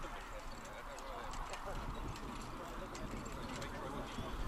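Hoofbeats of a harness racehorse pulling a sulky past on grass, a scatter of light, irregular clicks.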